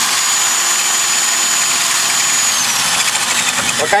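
Hammer drill with a half-inch masonry bit boring into a concrete wall, the bit about half an inch in and just starting to bite. It runs steadily with a high whine that drops a little after halfway, then lets off and stops near the end.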